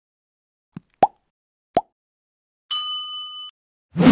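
Sound effects of an animated like-and-subscribe button: a faint tick, then two short pops that rise in pitch about three-quarters of a second apart. A bright bell-like notification chime follows, lasting under a second, and a low thud hits right at the end.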